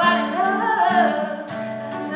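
A woman's voice sings a bending melodic line over an acoustic guitar; the voice drops out a little past halfway, leaving the guitar playing.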